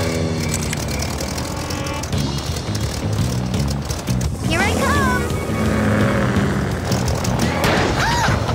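Cartoon action music over the steady drone of a propeller plane and a helicopter, with a brief rising vocal cry about halfway through.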